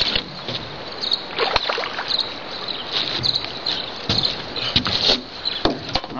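Irregular rustling, splashing and handling noises as a hooked rock bass is reeled in and landed.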